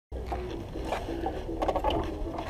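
Zanella RZF 200 motorcycle engine idling with an even low pulse, with a few clicks about one and a half seconds in.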